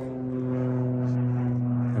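A steady, low machine hum held at one even pitch.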